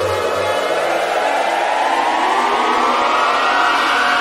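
Electronic club-music build-up: a synth riser climbing steadily in pitch, with the bass dropped out about half a second in.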